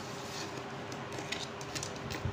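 Pencil drawing short lines on paper: a few quick scratching strokes in the second half, over a steady room hum.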